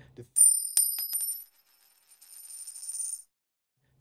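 Bright, high-pitched metallic chime from an edited-in transition sound effect: a few sharp clicks in the first second over ringing high tones, which fade, swell back and cut off suddenly a little after three seconds.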